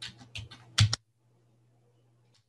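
Computer keyboard being typed on while numbers are entered into a spreadsheet: a quick run of keystrokes in the first second, the last one the loudest, then the typing stops. A faint steady low hum runs underneath.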